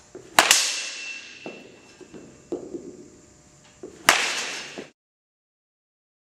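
Baseball bat hitting pitched balls in an echoing indoor batting cage: a loud crack with a short ring about half a second in, and another near four seconds in, with softer knocks of balls landing in between. The sound cuts off abruptly about a second before the end.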